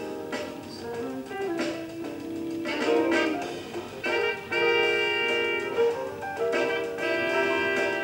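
Live jazz-soul band music: a trumpet holds long notes over guitar and keys, twice in the second half.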